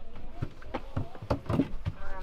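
A series of light knocks and clicks from things being handled inside the cabin of a parked Robinson R44 helicopter.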